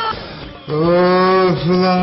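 A man's voice making two long, drawn-out vocal sounds held at one steady pitch, starting a little under a second in, with a short dip between them.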